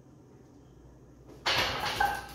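Quiet for about a second and a half, then a sudden loud, rushing breath from a man straining at the end of a set of barbell bench press.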